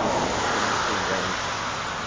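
A car passing on the road: a steady rush of tyre and engine noise, loudest at the start and slowly fading as it goes by.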